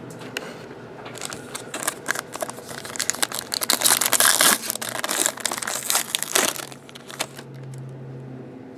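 Foil wrapper of a 2014 Topps Tribute baseball card pack crinkling as it is opened by hand, loudest about halfway through and stopping about a second before the end.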